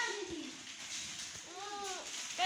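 A bird calling: two short low notes that rise and fall, one at the start and one near the end.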